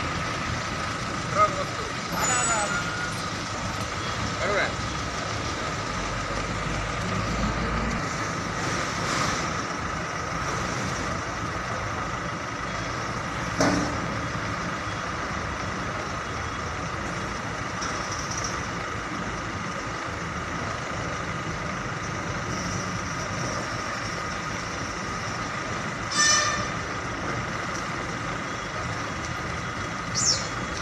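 Heavy diesel trucks running in a yard, a steady engine noise, with a few short, sharp sounds, the loudest about 26 s in, of the kind air brakes make.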